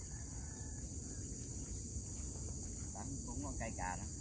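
A steady, high-pitched chorus of insects chirring without a break, with faint voices briefly near the end.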